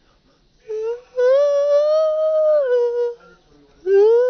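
A young man imitating a dog's howl with his voice: a short note, then a long, held howl that rises slightly and drops in pitch before it stops. A second howl begins near the end.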